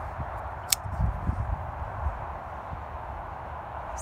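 Kershaw Leek assisted-opening pocket knife snapping open with one sharp click about three-quarters of a second in, over a low steady rumble on the microphone.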